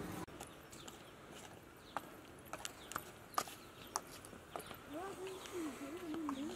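Woodland ambience with small birds giving short high chirps, and a dove cooing in a wavering low tone from about five seconds in. Scattered light taps of footsteps on a dirt path.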